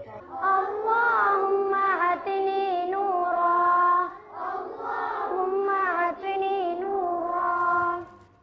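Children's voices chanting a prayer together in a melodic, sung style, in long held phrases with short breaks about four seconds in and again about six seconds in.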